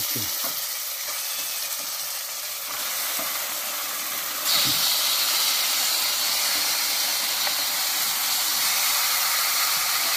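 Chunks of raw porcupine meat frying in hot spiced oil in a steel pot, a steady sizzle. About halfway through the sizzle jumps louder and brighter as more raw meat goes into the hot pot.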